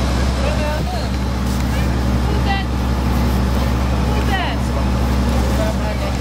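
Engine running steadily with a low, even hum, under scattered chatter of voices.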